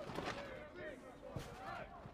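Faint voices of players and spectators calling out on and around a football pitch, with one brief knock about one and a half seconds in.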